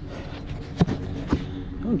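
Two sharp knocks about half a second apart over a low, steady background hum, and a man's voice starting near the end.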